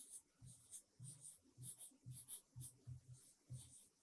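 Very faint pen strokes on a writing board as the words are written out, short scratches and taps about three a second.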